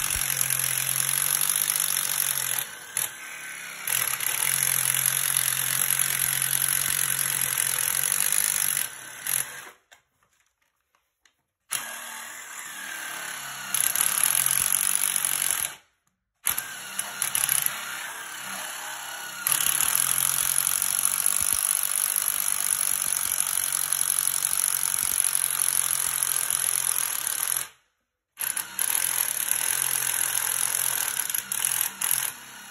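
Cordless Makita drill running in long steady bursts with its bit working inside a PVC drain pipe, cutting the plastic. The sound cuts off abruptly several times, once for about two seconds near the middle.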